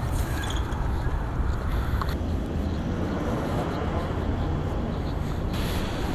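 Street traffic noise: a steady low rumble of cars driving along a city road.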